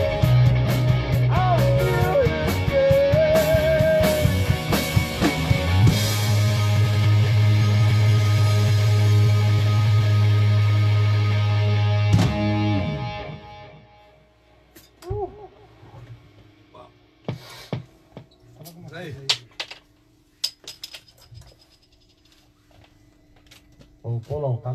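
Rock band of electric guitars, drums and keyboards playing a song to its end on a long held chord, which stops about thirteen seconds in. After that come low voices and a few small knocks.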